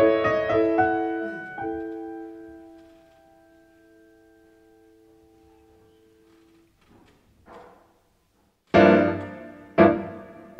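Piano chords, the last one held and fading away over about three seconds. After a quiet gap, loud new piano chords are struck twice near the end, the opening of the next song.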